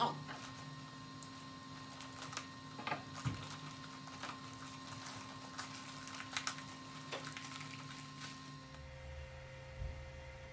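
Scattered light clicks and rustles of a steel lathe chuck being unwrapped from a plastic bag and turned over in the hands, over a steady low electrical hum.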